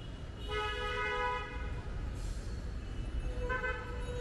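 Vehicle horns honking in street traffic: one blast of about a second shortly after the start and a shorter one near the end, over a steady low traffic rumble.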